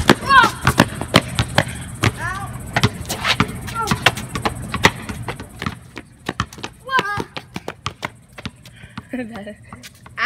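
A basketball bouncing on a concrete driveway as it is dribbled, a quick, irregular run of sharp bounces, with boys' short shouts and exclamations over it.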